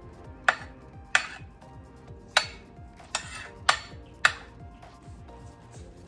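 A metal slotted spoon clinking and scraping against a ceramic baking dish as roasted potato wedges and onions are pushed aside: six sharp clinks over the first four or five seconds.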